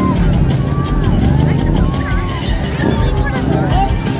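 Motorcycle drifting in circles, its engine running and revving up and down, under loud crowd chatter.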